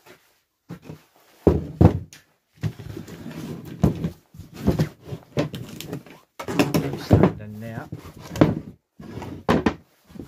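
Wooden boards and a sheet of MDF handled and set down on a wooden workbench: a run of irregular knocks and thuds of wood on wood.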